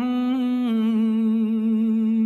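A voice holding one long sung note, with a small step down in pitch a little before a second in, over quiet backing music.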